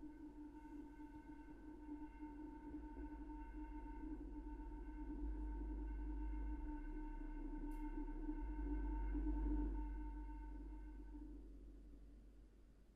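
A soft chord of steady sine-wave tones mixed with faint noise, the lowest tone strongest. It swells gradually to its loudest about nine and a half seconds in, then fades away near the end.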